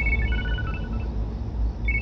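Mobile phone ringing with an electronic ringtone: a short melody of high beeps that starts over near the end, over a low steady drone.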